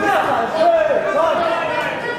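Several voices calling out at once in a large, echoing hall: spectators and corner men shouting during a boxing bout.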